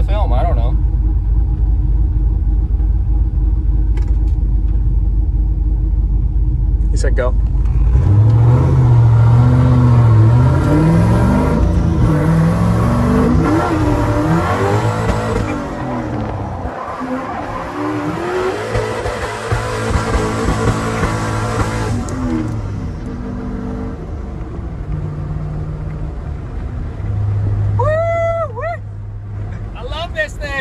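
Turbocharged 700 hp Chevrolet Silverado drift truck heard from inside the cab: idling for about eight seconds, then revved hard and held high through a slide, with tyre squeal for roughly fourteen seconds, before settling to lower, steadier running.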